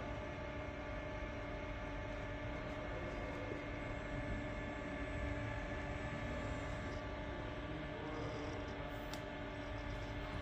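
ABB YuMi single-arm collaborative robot running its program, its joint motors whining faintly and gliding up and down in pitch as the arm moves, over a steady hum with several fixed tones.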